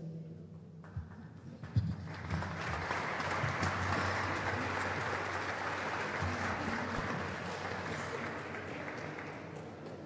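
Audience applauding, starting about two seconds in after a couple of sharp knocks, peaking and then slowly dying away.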